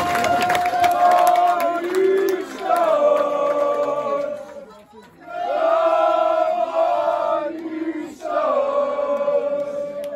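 Maidstone United away supporters chanting in unison, men's voices close by, in three long drawn-out calls, with clapping near the start.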